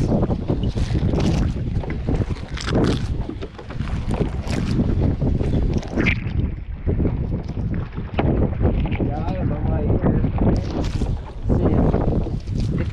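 Wind buffeting the microphone while a wet trammel net is hauled by hand over the side of a small boat, with irregular splashes and slaps of water and net.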